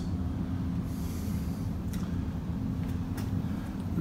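Steady low hum and rumble of background noise in the room, unchanging throughout, with a couple of faint clicks.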